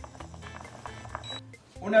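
A short, high electronic beep from an induction cooktop's touch controls as the hob is switched off, over faint background music.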